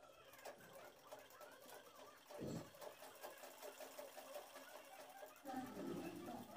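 Domestic sewing machine stitching fabric at a steady pace: a fast, even run of faint needle strokes, with one louder thump about two and a half seconds in.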